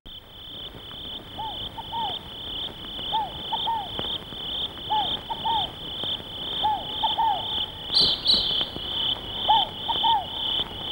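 Night ambience of crickets chirping in a steady pulsing trill about twice a second, with frogs giving short calls in twos and threes about every second. A brief higher double chirp rises over them near the end.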